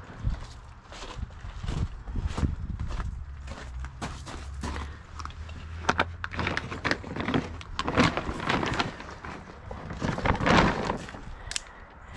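Plastic sheeting of an RV skirt rustling and crinkling in irregular bursts as it is grabbed and pulled by hand, with scuffs and knocks mixed in.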